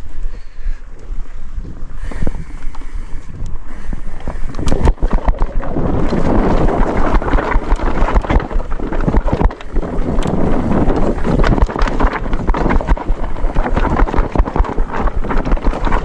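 Mountain bike riding down a dry dirt trail: wind rushing over the microphone, tyres rolling over the dirt, and the bike knocking and rattling over bumps. It gets louder and rougher from about five seconds in, as the trail turns to narrow singletrack.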